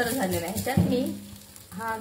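Sliced onions sizzling as they fry in a black kadai, being browned toward reddish. A spatula stirs and scrapes them against the pan, with a sharp scrape or knock about a second in.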